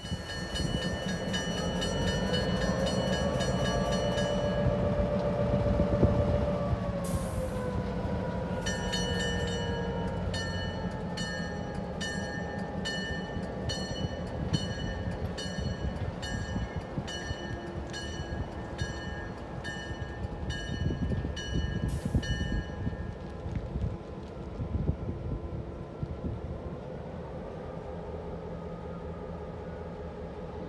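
Great Northern F7 diesel locomotive running, its engine pitch rising and then falling over the first few seconds. A bell rings at a steady beat of roughly once a second until about two-thirds of the way in, with short hisses of air near the quarter mark and when the ringing stops.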